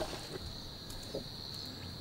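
Faint bush ambience: a steady high-pitched chirring of crickets over low background noise.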